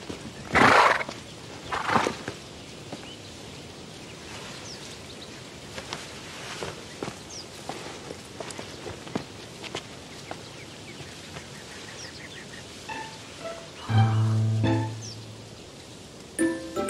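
A carriage horse blowing loudly twice in the first two seconds, then a quiet outdoor background with scattered small clicks and footsteps. A drama score with a low sustained note comes in about fourteen seconds in.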